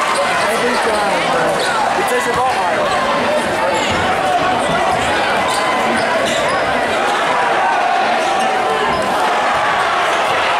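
Basketball game in a packed gym: a basketball being dribbled on the hardwood court under a steady babble of crowd voices echoing in the hall.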